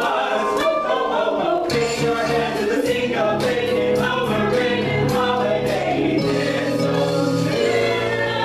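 A small ensemble of mixed male and female voices singing together in harmony, with keyboard accompaniment; low sustained notes come in about two seconds in.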